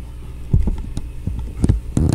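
Acoustic guitar with a G chord ringing low, under several low thumps.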